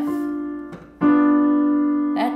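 Keyboard piano playing a B diminished chord (B, D, F): one held note fades, then the three notes are struck together about a second in and left ringing.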